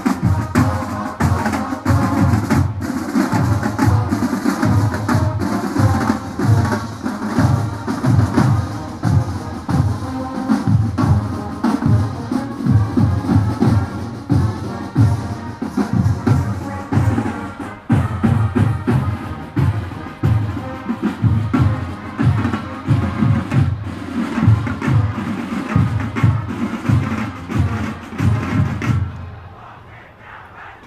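Marching band drumline playing a steady cadence of bass and snare drums for the ramp entrance march, with sustained pitched tones above the beat. It stops abruptly about a second before the end.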